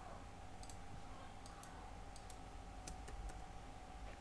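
Faint, irregular clicks, about ten of them, from a computer mouse being handled, over a low steady electrical hum.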